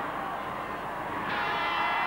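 Half-time horn sounding, a steady buzzing tone that starts about two-thirds of the way in and signals the end of the first half, over crowd noise in the hall.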